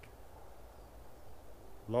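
A quiet pause outdoors: only faint, steady low background noise, with no distinct event.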